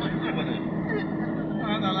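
Steady road and engine noise inside a moving car's cabin, a continuous rumble with a low hum, with voices speaking over it shortly after the start and again near the end.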